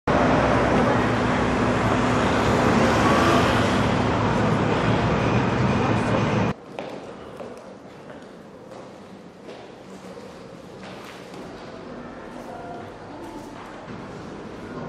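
Loud, steady city street noise with passing traffic. About six and a half seconds in it cuts off suddenly to a much quieter indoor room tone with a few faint knocks.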